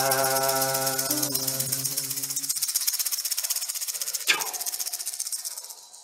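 A rattle shaken in a quick, even rhythm, closing out an icaro chant: a held sung note under it ends about two and a half seconds in, a single sharp strike rings briefly about four seconds in, and the rattling fades away at the end.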